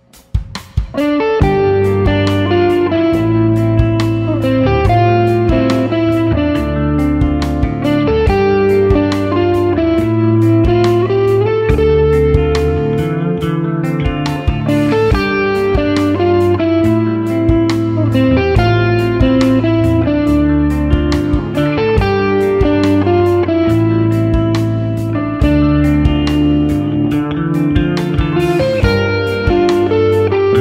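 Cort G250 SE electric guitar played through an amplifier over a backing track with drums and bass, which comes in about a second in after a few clicks.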